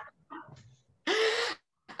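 A woman's short breathy laugh: one voiced huff of about half a second, about a second in, after a few faint sounds.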